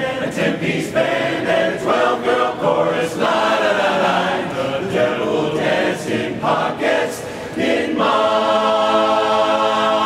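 Men's barbershop chorus singing a cappella in close harmony, in short, broken phrases, then about eight seconds in settling onto a long held chord.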